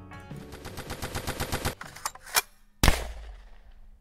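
Outro sound effect: a rapid machine-gun burst of about a dozen shots a second for roughly a second and a half, then a sharp crack and a single loud bang with a low rumbling tail near the end.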